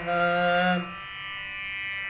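Sanskrit verse sung in a Carnatic style, the last syllable of a line held on one note until about a second in. Under it and after it, a steady instrumental drone carries on.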